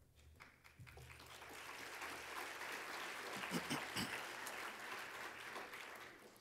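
Audience applauding. The clapping builds over the first couple of seconds, holds, and dies away near the end.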